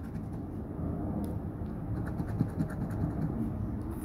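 A coin scratching the latex coating off a paper lottery scratch-off ticket: quick, repeated rasping strokes.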